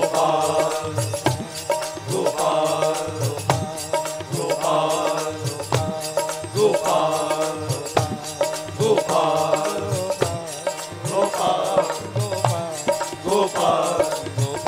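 Male voices singing a Hindu devotional bhajan in repeated chant-like phrases, accompanied by a harmonium and a steady drum beat.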